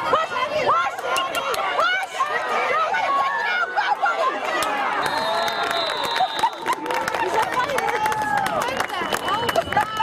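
Crowd of sideline spectators chattering and calling out, several voices overlapping.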